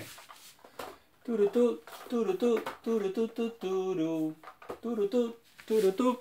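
A man's voice humming a short wordless tune in a string of held notes that step up and down, starting a little over a second in, with a few faint handling clicks before it.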